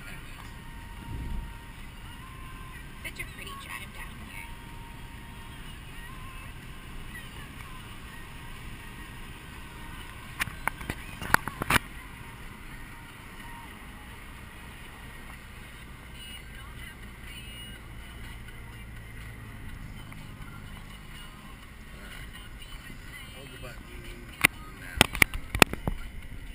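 Steady road and engine noise inside a moving car's cabin, with a few sharp clicks or knocks about ten to twelve seconds in and again near the end.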